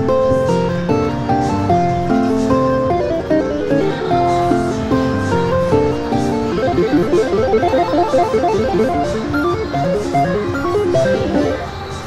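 Slot machine win music playing while the credits count up for a line win: a repeating plucked-string melody that breaks into fast running notes about halfway through, stopping just before the end.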